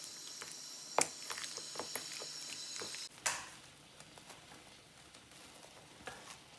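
Faint squelching of raw chicken pieces being turned by a gloved hand in a spiced yoghurt marinade in a stainless steel bowl, with a few light clicks in the first three seconds. It goes near silent for the second half.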